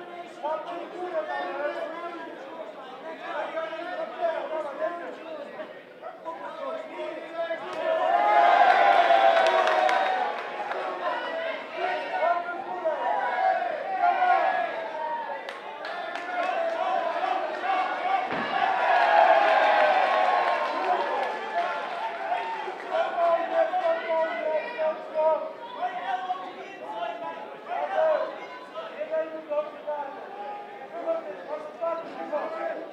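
Spectators in a hall shouting and cheering, many voices overlapping. The noise swells loudest twice, about eight seconds in and again near the twenty-second mark, with a single dull thump about eighteen seconds in.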